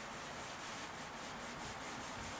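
A whiteboard eraser rubbing back and forth across a whiteboard, a steady soft scrubbing in quick repeated strokes as marker writing is wiped off.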